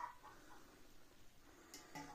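Near silence: faint room tone, with one short faint sound right at the start.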